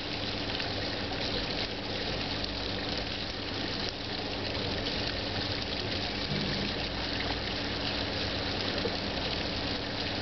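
Fountain water falling in a steady splashing rush as it cascades down stone steps into the basin.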